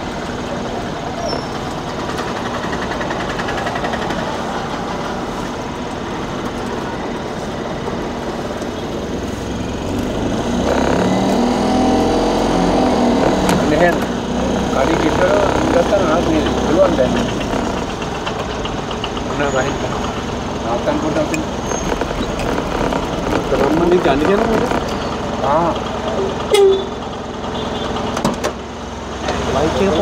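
Steady engine and road noise inside a moving vehicle in town traffic, with indistinct voices talking over it from about ten seconds in.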